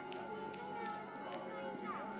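Indistinct background voices over a steady low hum of ambience, with a faint continuous tone.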